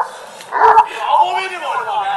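A Kangal dog barking as it lunges at a trainer's protection sleeve during bite training.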